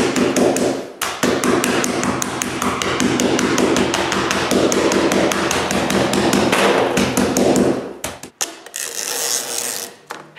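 Wooden mallet tapping rapidly on the plastic frame of a small pet door, driving its pins through a window screen. The strikes are quick and light, several a second, with a brief pause about a second in, and they stop about eight seconds in.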